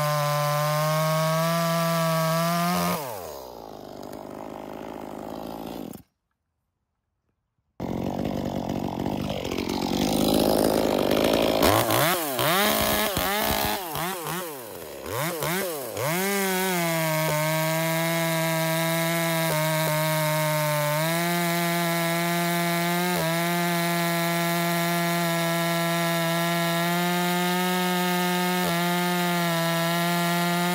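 Ported Echo 2511T two-stroke top-handle chainsaw cutting through a log at full throttle with a steady high engine note. About three seconds in, the pitch drops as the throttle eases, and after a brief silence the engine revs up and down unevenly before settling back into a steady full-throttle cut through the second half.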